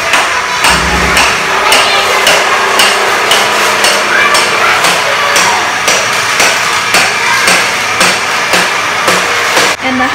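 Hammer blows on a concrete floor slab, struck at a steady pace of a little under two a second, chipping up old floor tile and its glue.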